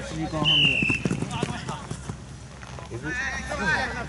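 A short, slightly falling whistle blast about half a second in, among people's voices on a football pitch, with a few short knocks early on.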